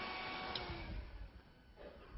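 Faint room tone in a lecture hall: a low hiss with a faint steady hum that dies away after about a second, with one faint tick about half a second in.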